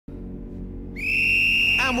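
Referee's whistle blown in one long, steady blast to signal the kick-off, over a low steady hum.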